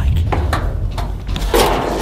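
Footsteps on bleacher seats overhead: several short knocks and thuds, with a louder scuffing stretch near the end.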